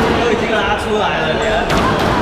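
Sharp knocks of a squash ball, once at the start and again about a second and a half later, echoing in the court, over a murmur of background voices.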